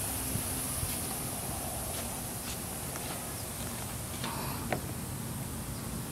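Steady outdoor background noise with a few faint clicks and one sharper tick near the end.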